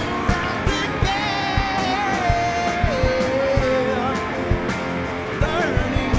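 Live rock band playing, with electric guitars, bass and drums. Over regular drum hits, a lead line holds one long high note, then drops to a lower note held for about two seconds.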